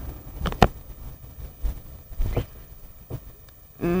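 A few short knocks and clicks over a low rumble, the sharpest about half a second in.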